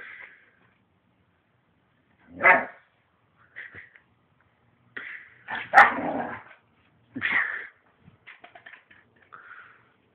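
Dog barking and yipping during play, in short separate bursts: the loudest about two and a half, six and seven seconds in, with fainter yips between.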